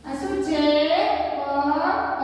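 A high voice singing unaccompanied, with held notes that glide up and down.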